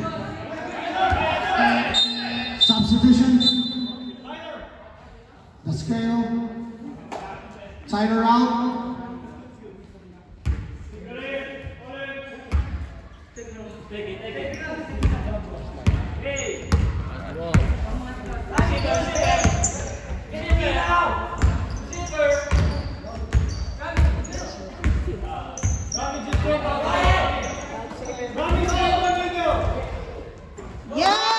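Basketball dribbled on a hardwood gym floor, with repeated thumps that come thick and fast through the second half. Voices of players and spectators call out throughout, echoing in the large gym.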